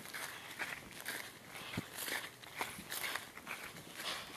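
Footsteps through dry grass, a rustling crunch about twice a second, with one heavier thud a little before the middle.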